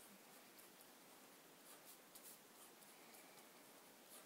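Faint scratching of a pen on paper, writing in short strokes.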